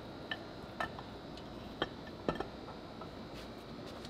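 Scattered light metal clicks and ticks, about half a dozen irregularly spaced, as the eccentric shaft of a Mazda RX-8 rotary engine is worked into the rotor and housing during assembly, over quiet shop room tone.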